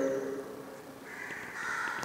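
A bird calling faintly in the background, starting about halfway through.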